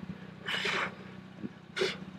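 A person's sharp breath or sniff, twice, about half a second in and again near the end, over a steady low machine hum.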